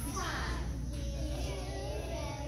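Music with a group of young children singing together; many voices overlap, fullest in the first second.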